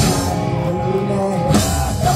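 Punk rock band playing live on electric guitars, bass and drum kit. There is a loud drum hit at the start and another about one and a half seconds in, as the band builds into a fuller, louder section.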